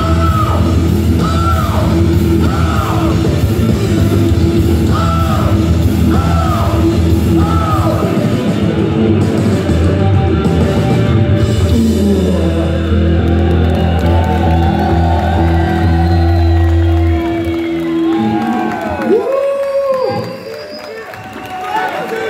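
Live heavy metal band playing loud distorted electric guitars, bass and drums under high, wailing sung lines. About 17 seconds in the band's low end stops and a last bending vocal wail rings out before the sound drops and the crowd begins to cheer near the end.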